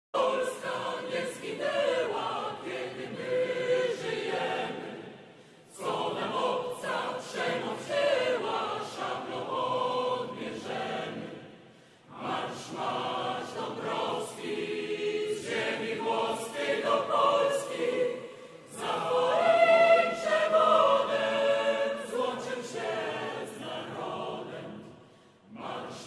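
Mixed choir of women's and men's voices singing in phrases, with short breaks between them about every six seconds.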